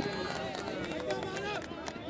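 Several voices of players and onlookers calling out and chattering at once on an open cricket ground, with no one clear speaker.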